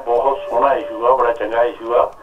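Speech only: a caller's voice over a telephone line, thin and cut off in the treble.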